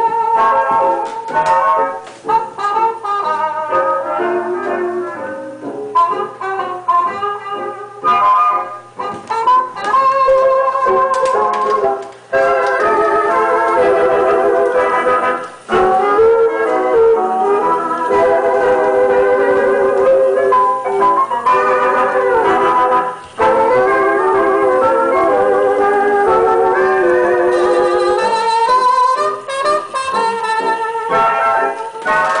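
A Wurlitzer 850 Peacock jukebox playing a 78 rpm record: an instrumental passage of an old dance-band song, played loud through the jukebox's speaker.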